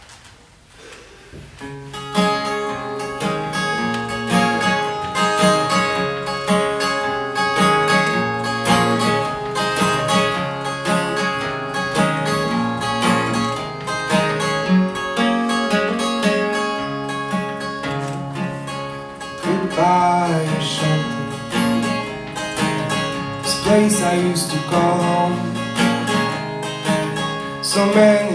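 Solo steel-string acoustic guitar playing a song's introduction, starting about two seconds in after a quiet pause.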